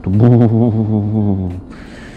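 A man's voice drawing out one long, low, slightly wavering note for about a second and a half, then a brief hiss near the end.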